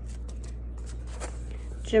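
Paper seed packets being handled and swapped between the hands, giving a few light paper rustles and taps.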